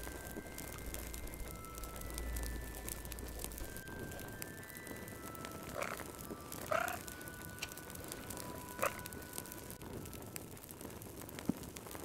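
Wood fire crackling with many small pops over soft, slow music of held notes. Three short pitched calls stand out, two close together about six seconds in and one near nine seconds.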